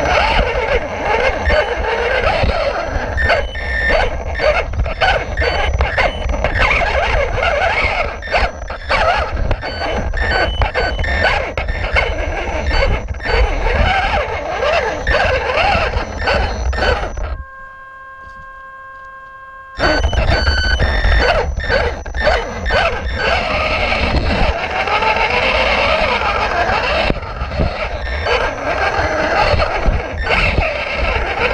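1/18-scale Losi Mini Rock Crawler heard from its onboard camera: the electric motor and gears whining, with a dense rattle and clatter of the chassis and tyres on rock. About halfway the clatter drops out for about two seconds, leaving only a quieter steady whine, then resumes.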